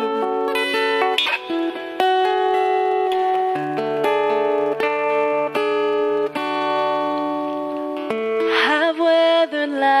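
Acoustic guitar playing an instrumental passage of ringing chords, with a woman's singing voice coming back in near the end.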